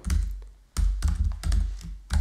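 Typing on a computer keyboard: a quick run of key clicks with low thuds, pausing briefly about a third of the way in.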